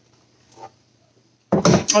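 A single soft knock as a clear plastic blender jar is set down on the kitchen counter, over a faint steady low hum. A woman starts speaking near the end.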